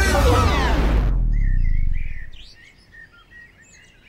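Pop music slides down in pitch and stops about a second in, as if slowed to a halt, leaving a fading low rumble; then faint bird chirps and calls.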